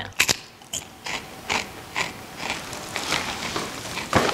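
A bite into a crisp layered seaweed snack made with sesame seeds, nuts and puffed rice, then crunchy chewing at about two crunches a second.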